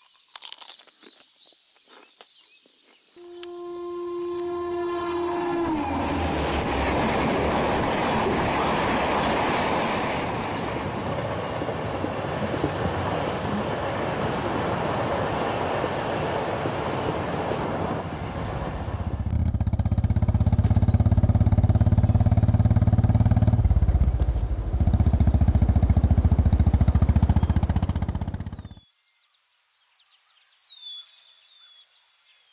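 Suburban train: a horn sounds about three seconds in and slides down in pitch as it ends, then the loud, steady noise of the train running. A heavier low rumble takes over in the last third and cuts off suddenly near the end.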